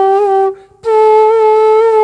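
Bamboo bansuri flute holding a note ornamented with gamak: small, regular wobbles in pitch made by shaking a finger over a hole without lifting it. The note breaks off about half a second in, and after a short gap a slightly higher note follows with the same wobbles.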